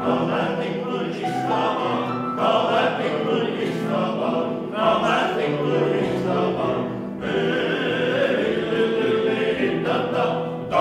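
Men's vocal ensemble of about eight voices singing in harmony, with grand piano accompaniment.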